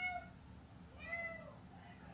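A cat meowing twice: a drawn-out meow that ends just at the start, then a shorter meow that rises and falls about a second in.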